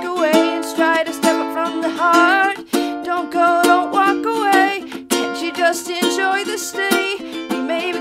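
A ukulele strummed in a steady rhythm, with a woman singing long, wavering notes over it without clear words.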